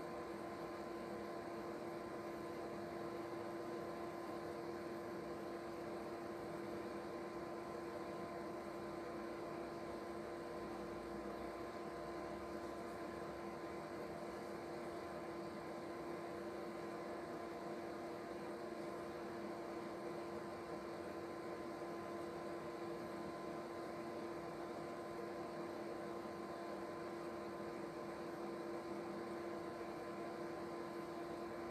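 Steady background hum with a faint hiss, holding two constant tones and no separate sounds.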